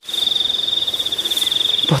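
An insect's continuous high-pitched trill, steady and rapidly pulsing, starting suddenly and carrying on unbroken.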